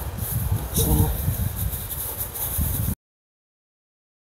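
Hands rustling and pulling at dry straw mulch and soil, with a short murmur about a second in; the sound cuts off suddenly to silence about three seconds in.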